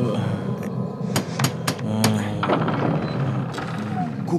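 Several sharp knocks on a large wooden gate, over a steady low music score.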